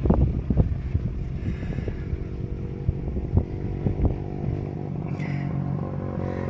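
Motorcycle engine running steadily under way, a low even drone, with loose rattles and knocks from the vehicle's frame over the first four seconds or so, smoother near the end.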